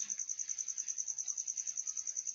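A cricket's steady high-pitched trill, pulsing about twelve times a second.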